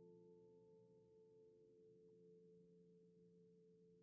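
Near silence: the very faint tail of a sustained piano chord slowly dying away, a few steady tones fading between pieces.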